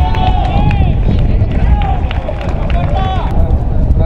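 Footballers shouting short, high calls to each other during play, with a few sharp knocks and a steady low rumble underneath.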